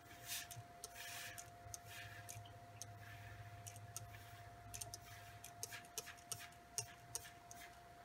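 Faint short spritzes of a pump mist sprayer misting water onto watercolor paper, a series of quick puffs and clicks at irregular intervals, one longer hiss about a second in.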